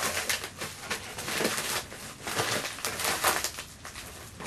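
Mailer bag rustling and crinkling in irregular bursts as it is handled and pulled at by hand.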